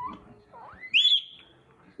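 A cat meowing once: a single high call that rises steeply in pitch and holds briefly before fading, lasting about a second.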